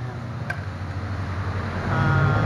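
A steady low background rumble, with one sharp click about half a second in from a coil of plastic hose being handled.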